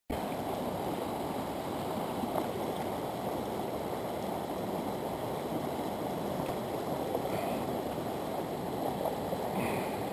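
Small fast-flowing stream rushing over a shallow riffle: a steady, even rush of water.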